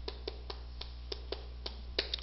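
Chalk writing on a chalkboard: a run of short, sharp taps and clicks as the chalk strikes and lifts, about three or four a second.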